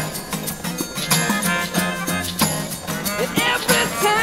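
A small acoustic band playing live with a steady beat: acoustic guitar, saxophones, trumpet and melodica together.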